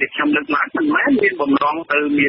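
Only speech: a single voice reading news narration continuously. It sounds thin and radio-like, with no top end.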